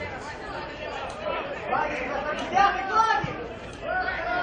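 Several spectators' voices talking over one another near the microphone: indistinct overlapping chatter in the stands of a football stadium.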